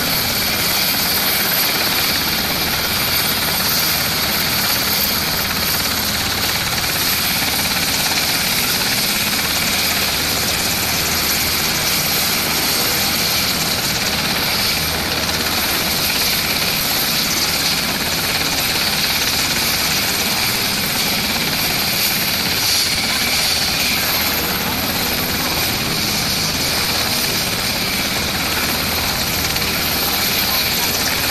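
Marine One presidential helicopter running on the ground: a steady, unbroken rotor and turbine noise with a constant high whine.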